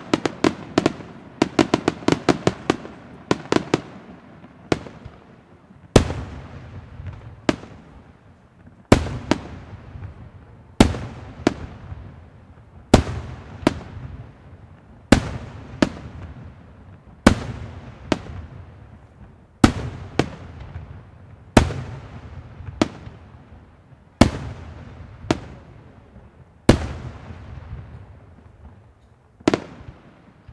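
Bruscella Fireworks aerial shells bursting overhead: a rapid string of reports in the first few seconds, then single loud bangs about every one to two seconds, each trailing off in a long echo.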